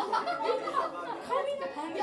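Speech only: several people talking at once, with chatter overlapping.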